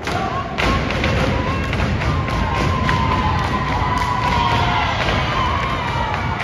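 A troupe of dancers stomping in unison on a hollow stage riser: a quick, uneven run of heavy thuds, with music playing over it.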